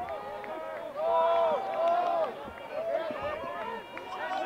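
Several voices shouting and calling out at a lacrosse game, overlapping in long, raised calls, with a few faint clicks among them.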